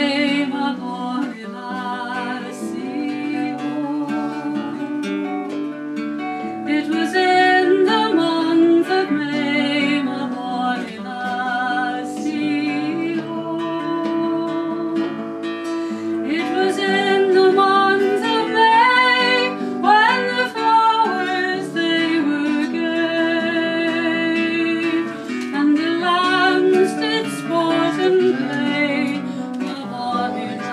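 A woman singing a folk song, accompanying herself on an acoustic guitar.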